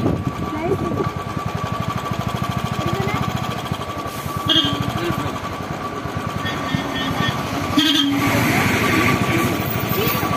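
Motorcycle engine idling with a rapid, even pulse, joined near the end by a larger vehicle passing on the road.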